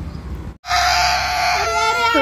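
A young child's long, loud wail, starting abruptly about half a second in and shifting pitch near the end: a toddler crying because her father has just left. Before it, the low rumble of a motorcycle engine moving away cuts off suddenly.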